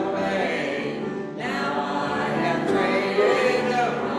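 A congregation singing a hymn together, with a short break between phrases about a second in.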